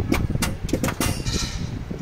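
Turbocharger actuator on an IVECO Stralis clicking as the ignition is switched on, moving its lever only a very short way: not normal, which the mechanic puts down to the actuator itself or a butterfly stuck inside the turbo. Several sharp clicks in the first second, over a steady low rumble.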